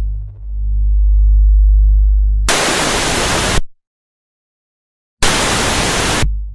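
A deep, steady bass tone, then a burst of TV static hiss about two and a half seconds in lasting about a second, a second and a half of silence, and another burst of static near the end.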